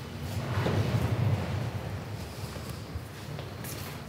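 Low room rumble with faint scattered footsteps and knocks as people walk across a workshop floor.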